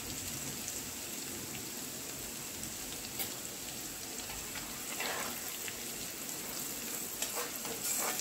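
Grated garlic, green chillies and curry leaves sizzling steadily in hot oil in a kadhai, with turmeric just stirred in: the tempering for kadhi, the garlic being lightly browned. A few faint clicks of a utensil against the pan.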